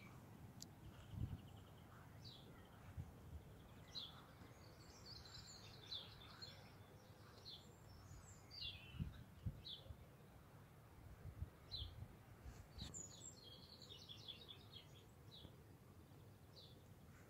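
Near silence with faint, scattered bird chirps and a few soft low bumps.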